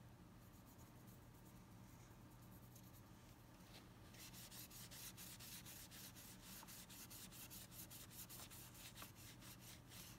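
Quick back-and-forth rubbing strokes on a painted broomstick, several a second, starting about four seconds in and faint. Before that only a low hum.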